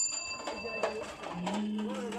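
Voices talking, with a high, clear ringing tone that fades out about a second in.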